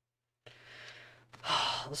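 A man sighing, a soft breath and then a louder breathy exhale, just before he starts to speak. The sound cuts in from dead silence about half a second in, with a faint steady electrical hum underneath.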